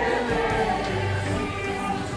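A group of people singing a worship song together, like a choir.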